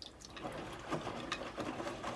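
Water trickling and splashing from the door of a leaking front-loading washing machine into a metal saucepan, a dense patter of small ticks that fills in about half a second in. The leak comes from the door seal, which she believes has gone.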